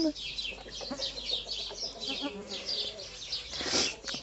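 Small birds chirping continuously outdoors, in rapid, repeated high falling chirps. There is a brief rustle of hay and rabbit-fur nest lining near the end.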